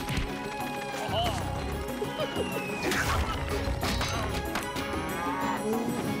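Cartoon sound effects over background music: a cow mooing, with a sudden crash about halfway through.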